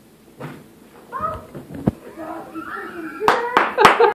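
A young child's high-pitched squeals and cries, rising in pitch and getting louder toward the end, with several sharp claps or knocks, the loudest near the end.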